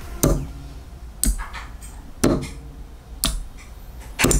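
Solenoid valves and their relay modules clicking open and shut, four sharp clicks about a second apart. The relays are switching the valves in a steady cycle, showing that the reworked Arduino control circuit is working.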